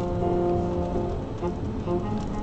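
Music from a car radio, a run of held notes changing about every half second, playing over steady road and engine rumble in the car's cabin.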